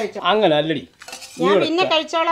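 Speech: a person talking in Malayalam, in short phrases with a brief pause about halfway through.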